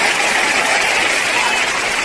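Audience applause, a steady sound of many hands clapping that fills the pause in the preaching.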